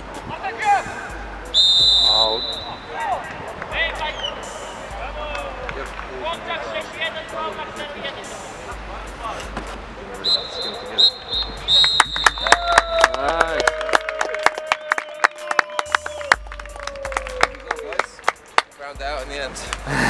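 Referee's whistle: one long blast about two seconds in, then several short blasts around ten to twelve seconds in, marking full time. Throughout there are shouts from the pitch and background music. From about twelve seconds a fast run of sharp beats sets in.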